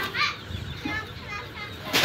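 Voices of children and people talking in the background, with short, high-pitched calls.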